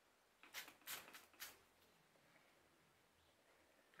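Trigger spray bottle misting water onto a palm: several short, faint sprays in quick succession in the first second and a half.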